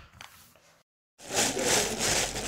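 Thin plastic carrier bag rustling and crinkling as hands rummage in it. It starts a little past halfway, after a brief dead-silent gap.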